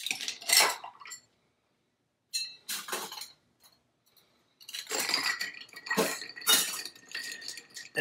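Ice cubes poured from a metal scoop into a glass mixing glass, clattering and clinking against the glass and the metal in three bursts, the last one the longest.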